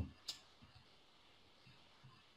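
Near silence with one faint, short click a fraction of a second in.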